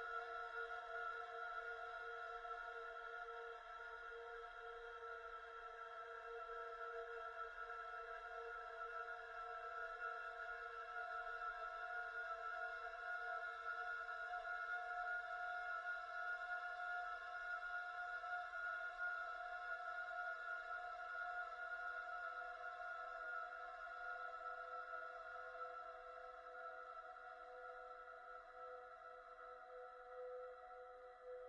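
Contemporary classical chamber ensemble holding a quiet, sustained chord of several long steady tones that shift only slowly, growing softer over the last few seconds.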